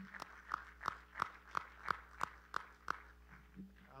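Hand claps of praise in a steady rhythm, about three a second, nine or ten claps that stop about three seconds in.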